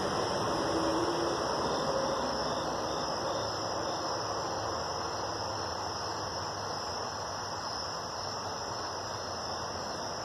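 Steady chorus of night insects, crickets, shrilling continuously over an even background hiss.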